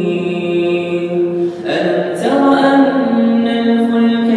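A solo male voice reciting the Quran in a melodic chant, holding long notes. One phrase ends about a second and a half in, and after a short breath the next begins.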